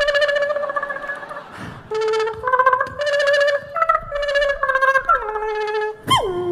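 A beatboxer's voice into a handheld microphone imitating a plucked Chinese string instrument, playing a melody of stepping notes with a quivering, plucked attack. There is a short break about one and a half seconds in, and near the end a note slides down in pitch.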